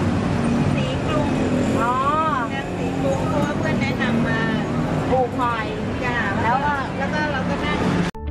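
Street ambience: people talking over the steady low hum of traffic.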